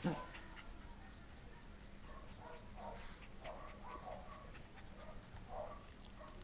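A Welsh corgi puppy's faint, soft whimpers: several short, quiet sounds spread over a few seconds, mixed with low voices.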